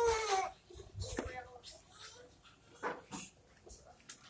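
Baby crying: a drawn-out wail that breaks off about half a second in, followed by quieter short whimpers and a light click.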